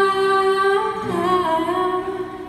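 Young female singer's voice through a microphone, holding a long sung note that drops in pitch and wavers about halfway through, then fades away near the end.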